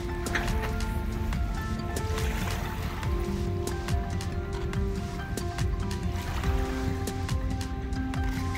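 Background music of held notes that change every second or so, over a steady low rumble.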